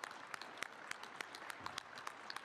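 Faint applause from a crowd in a hall, many claps overlapping, heard through the news clip's audio.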